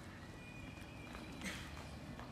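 A puppy eating rice from a glass bowl, with scattered small clicks of mouth and teeth on the bowl and one louder clack about one and a half seconds in.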